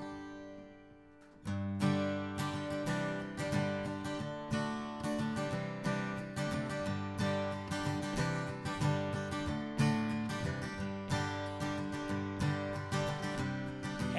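Acoustic guitar strummed in a steady rhythm, the instrumental opening of a country-folk song, coming in about a second and a half in.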